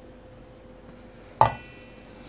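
A single sharp clink with a short metallic ring about one and a half seconds in, from a stainless steel saucepan on a glass-top induction hob, over a faint steady hum.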